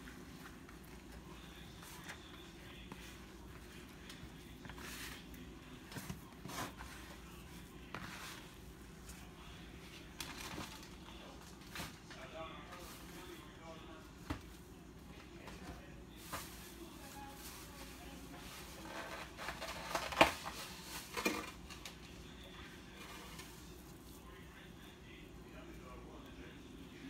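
A hand squeezing and mixing a damp salmon, flour and cornmeal dough in a plastic bowl: faint, irregular soft mixing noises with scattered light knocks against the bowl, the sharpest about twenty seconds in.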